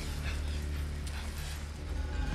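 A man gasping and groaning in short, strained breaths over a steady low rumble.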